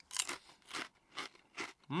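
Crunchy thick ridged potato crisp being bitten and chewed close to the microphone, about four sharp crunches roughly two a second.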